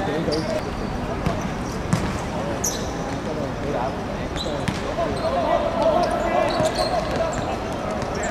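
Footballers calling and shouting on the pitch during play, with a few sharp thuds of the ball being kicked.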